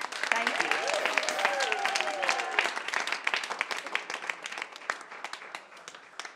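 An audience and the cast on stage applauding, with a few voices calling out over the clapping in the first two or three seconds. The applause dies down toward the end.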